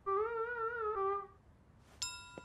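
A single high held note with a wavering vibrato that drops slightly in pitch about a second in and stops about a second and a half in.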